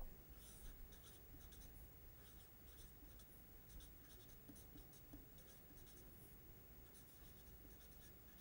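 Faint scratching of a felt-tip permanent marker writing on paper, in short irregular strokes.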